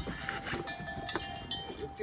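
Snow being scraped and scooped into a plastic bucket: rough crunching with a few short knocks.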